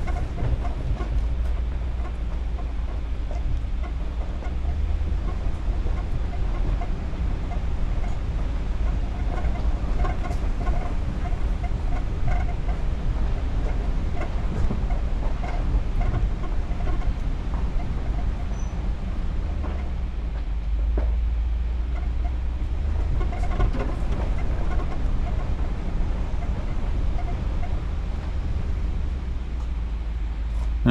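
Ram Power Wagon pickup driving along a rough dirt track, heard from inside the cab: a steady low rumble of engine and tyres with scattered small knocks and rattles.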